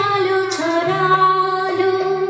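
A woman singing a Bengali film song, holding long notes, over a karaoke backing track.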